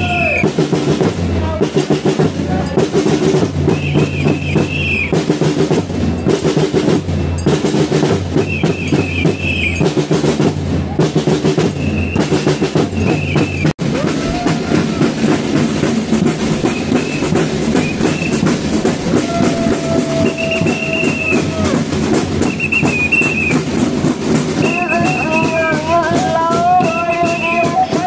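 Drums beating a steady, repeating marching rhythm amid a walking crowd, with voices calling out over it in short rising-and-falling phrases. After a brief dropout just before the middle, the drumming thins and the voices carry on.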